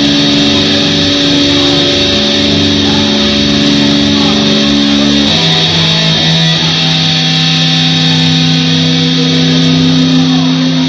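Distorted electric guitar playing long, held chords through the club's amplification, with a chord change about five seconds in and another shortly after; this is the opening of an instrumental metal song.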